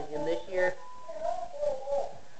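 A man's voice, wordless and indistinct, in two short spells about a second apart.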